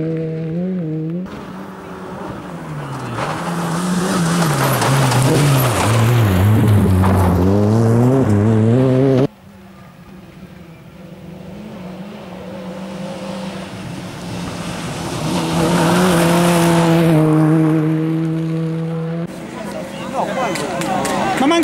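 Peugeot 106 rally car's engine revving hard on a gravel hillclimb stage, its pitch climbing and dropping with throttle and gear changes. The sound breaks off abruptly twice. Late on, the engine is held at high revs as the car draws near.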